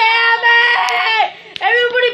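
A child's high-pitched voice wailing in long, drawn-out cry-like notes that fall away at their ends, breaking off briefly about a second and a half in.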